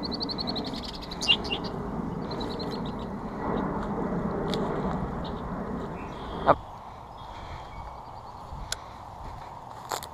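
Birds calling, a rapid run of high notes in the first second and a half and again briefly about two and a half seconds in, over a steady rustling that stops with a sharp knock about six and a half seconds in.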